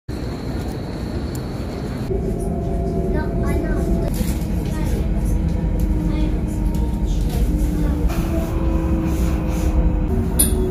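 A train running, heard from inside the carriage: a steady low rumble with humming motor tones that shift pitch now and then, and brief voices about three seconds in.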